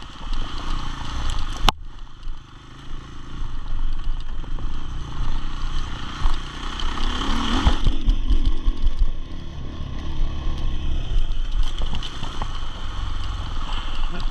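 KTM enduro motorcycle engine running under a rider's throttle on a rough dirt trail. It drops off briefly about two seconds in and comes back up, with the bike rattling over the ground. There is a single sharp knock just before the drop.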